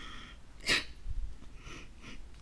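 A person sniffing sharply once, a short noisy breath in through the nose about two-thirds of a second in, with a fainter breath about a second later. It is the sniffle of someone tearful while reading an emotional statement aloud.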